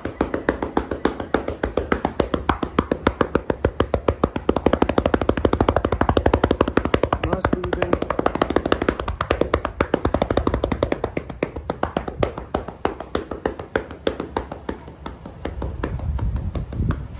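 Hands patting rapidly and rhythmically on a person's back through a thick towel, several even strikes a second, loudest in the middle and easing off near the end.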